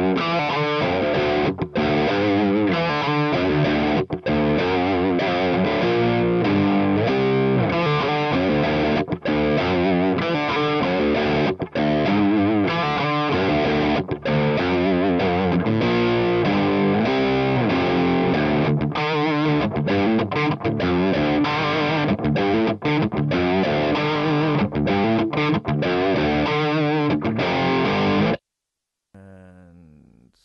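Distorted electric guitar playing through Amplitube 3's simulated Marshall amp and cabinet alone, with no effects plugins. The playing cuts off suddenly near the end.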